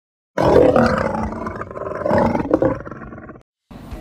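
An animal's growling roar, loud and starting abruptly, lasting about three seconds before it cuts off suddenly.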